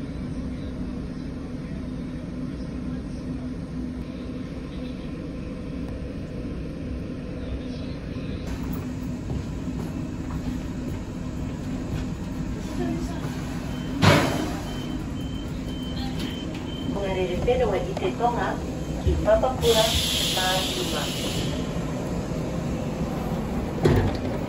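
Steady low hum inside a public transport vehicle, with a single knock partway through and a short burst of hissing air late on, like doors releasing air.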